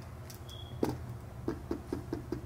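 A quick run of light taps or small knocks, starting about a second in and coming about four to five times a second.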